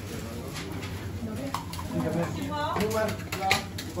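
Voices talking indistinctly in a kebab shop over steady background noise, with a few sharp clicks and knocks, the loudest about three and a half seconds in.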